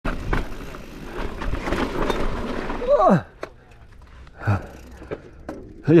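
Mountain bike rolling over a rough dirt and gravel trail, with tyre crunch and rattling clicks over wind noise for about three seconds. About three seconds in a short cry falls steeply in pitch, and the riding noise drops away, leaving a few scattered clicks.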